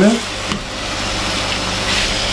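Diced chicken and onion sizzling in oil in a frying pan over high heat as it is seared, stirred with a slotted spoon, with a light knock of the spoon against the pan about half a second in.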